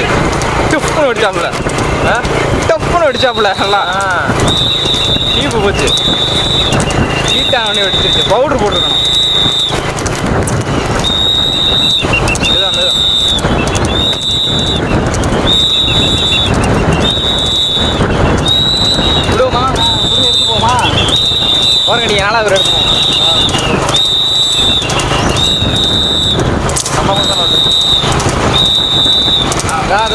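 A loud, excited voice shouting or calling over the race, with a high-pitched tone repeating in roughly one-second pulses from a few seconds in, over a steady rumble of vehicle noise.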